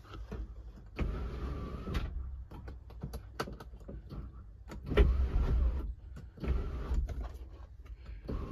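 Nissan X-Trail's electric sunroof motor whirring in three short runs of about a second each as the overhead switch is pressed, with small clicks between the runs.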